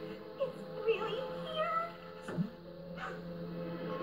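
Cartoon soundtrack playing from a television: background music over a steady low note, with short gliding squeaky sounds and a quick downward swoop a little over two seconds in.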